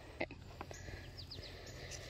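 Quiet outdoor ambience: a few faint, short, high bird chirps about a second in, over a low steady wind rumble, with one small click near the start.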